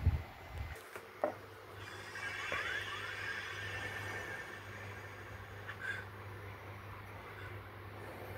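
Quiet room ambience: a steady low hum, with rumbling handling noise on the microphone in the first second and a couple of small clicks.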